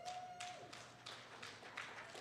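Scattered, light applause from a small congregation: a few people clapping irregularly, faintly.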